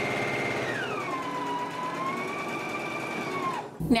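Electric sewing machine stitching a seam in fabric, its fast needle rhythm under a motor whine that drops in pitch about a second in as the machine slows, then stops suddenly near the end.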